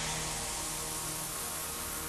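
Steady synthesized rushing hiss, a sound effect for the spacecraft flying, with faint electronic tones beneath.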